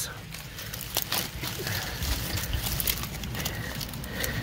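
Dry pineapple leaves rustling and crackling as a pup is worked loose from the mother plant, with a few sharp clicks about half a second and a second in.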